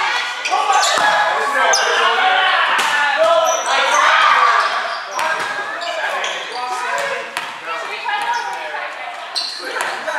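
Volleyball play in an echoing gym: several sharp slaps of the ball off players' arms and hands and off the hardwood floor, over a steady layer of players' voices calling out.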